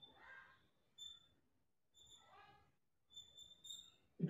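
Near silence, with a few faint, short high chirps.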